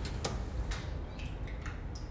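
Four or five light, sharp clicks and taps from handling at a kitchen counter, spaced unevenly over a low steady hum.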